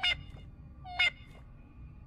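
Two short, high-pitched calls from a small cute cartoon alien creature, about a second apart, each stepping up in pitch.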